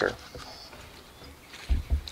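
Low, quiet background after the end of a spoken word, with a short, low thump near the end.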